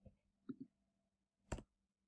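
Near silence broken by a few short clicks, a faint pair about half a second in and a sharper one about a second and a half in: a computer mouse being clicked.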